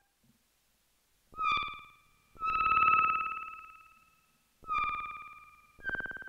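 Stylophone Gen X-1 analogue synth played with its stylus: four short high notes, the second the longest and loudest, each dying away in a fading tail. The tail comes from its onboard delay, set to zero delay time with high feedback to make a pseudo-reverb.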